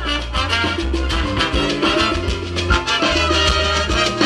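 Live salsa band playing: trumpets and trombone over keyboard, drums and percussion, with a steady beat and a deep repeating bass line.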